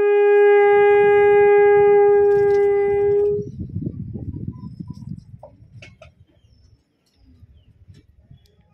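A conch shell (shankh) blown in the temple ritual: one long, steady, loud note held for about three and a half seconds, then it stops abruptly. Only a faint low background rumble follows.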